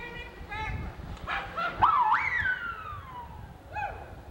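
Short high calls, then a long wailing cry that jumps up in pitch and slides slowly down over about a second, from a performer about to slide down a ramp into the water.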